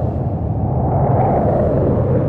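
Film sound effect of glowing UFOs rushing past: a loud, steady low rumble.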